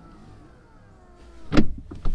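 Rolls-Royce Spectre's powered driver's door closing at the press of the brake pedal: a faint electric motor whine that falls slowly in pitch, then a loud thud as the door shuts about one and a half seconds in.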